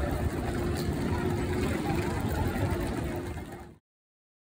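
Railway station platform ambience: heavy low rumble with a steady hum, around electric trains standing at the buffer stops. The sound cuts off suddenly near the end.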